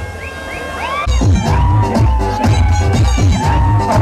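Loud electronic dance music played over the stage speakers. It starts with a brief lull filled with rising, swooping synth sounds, then a heavy bass beat comes back in about a second in.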